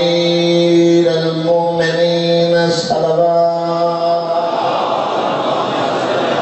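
A man's voice chanting a melodic recitation through a microphone in long, drawn-out held notes, breaking twice. About four and a half seconds in, the voice gives way to a loud, rushing wash of noise.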